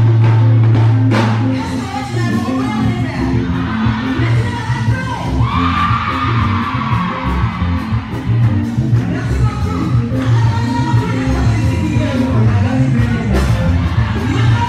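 Live music played loud through a PA system, with a woman singing into a microphone over a heavy bass line; a long, high held vocal note comes near the middle.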